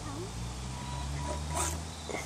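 Low steady hum of a Losi Night Crawler RC rock crawler's electric drive for about a second and a half, with a single sharp knock near the end. A child makes small voice sounds at the start.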